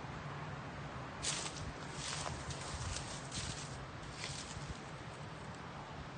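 Footsteps crunching through dry undergrowth and dead leaves: a run of crisp crackling steps from about a second in until past four seconds.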